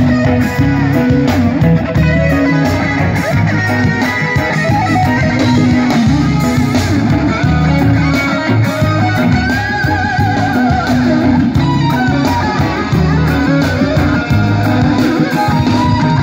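Live rock band playing an instrumental passage: electric guitar over bass guitar and drums, loud and steady, with a wavering lead guitar line about ten seconds in.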